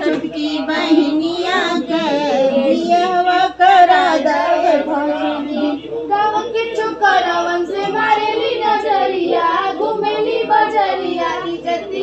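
A group of women singing a traditional wedding folk song together, several voices at once, without a break.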